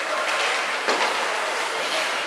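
Indoor ice hockey rink during play: a steady hiss of skate blades scraping the ice, with one sharp clack about a second in.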